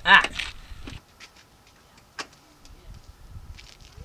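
A man's short, loud startled yell, the scream of someone afraid of wasps. Then a quiet stretch with a few faint ticks and one sharp click a little over two seconds in.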